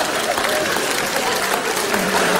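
Large theatre audience applauding steadily, a dense even clatter of many hands clapping.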